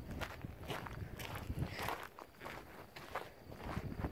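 Footsteps on the gravel ballast of a railroad track, faint and irregular, several steps a second.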